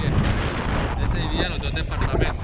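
Wind buffeting the camera microphone in the airflow of a paraglider in flight: a loud, rough, low rumble. A voice comes through briefly in the second half.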